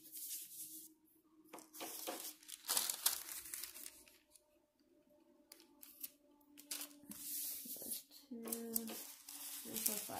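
Parchment paper rustling and crinkling as sheets are handled and laid flat, in a few separate bursts with quiet gaps between.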